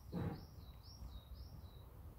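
A small garden bird calling: a run of about four short, arching high whistled notes in quick succession. A short breathy sound comes near the start.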